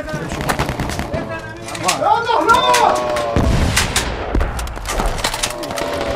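Battle gunfire: many sharp shots in quick irregular succession, with a man crying out about two seconds in and a low rumble after the middle.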